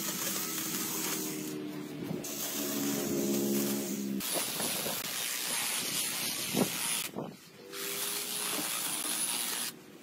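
Small gas engine of lawn-care equipment running, a steady hiss of cutting or blowing over the engine's hum, changing abruptly a few times.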